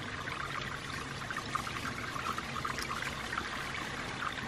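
Steady rush of a small mountain creek's running water.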